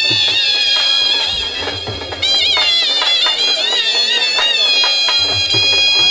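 Shehnai reed pipes playing a high, ornamented, wavering melody together, over a dhol drum beat. The music dips briefly before a new high phrase starts about two seconds in and settles into a long held note. The drum beat comes back strongly near the end.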